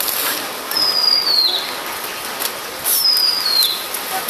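Crinkly rustling of a large bundle of folded silver foil being handled, with many small crackles. A high, falling whistled call, a bird's, comes twice over it, about two seconds apart.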